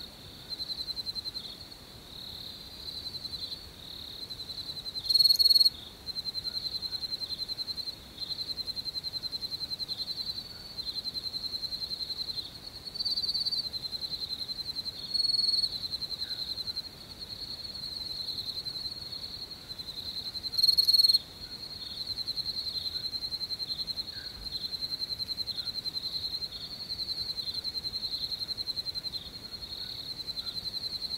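Crickets chirping: a steady high-pitched trill of rapid pulses in runs a second or two long, with two louder bursts about five seconds in and about twenty-one seconds in.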